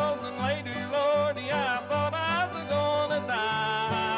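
Old-time string band playing a country blues: a melody line slides and bends between notes over a steady rhythmic accompaniment.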